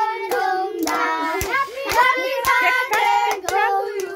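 Hand clapping in a steady rhythm, about two claps a second, keeping time with a group of singing voices that include a child's.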